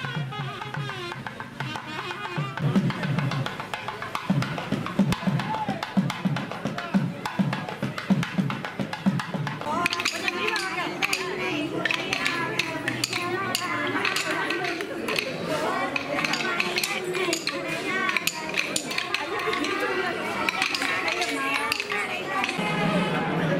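Festival procession music with steady, low drum beats. About halfway through it gives way to kolattam: women clicking pairs of wooden sticks together in a quick rhythm while singing devotional bhajan songs.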